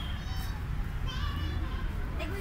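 Children's voices, short high-pitched calls and chatter, over a steady low rumble.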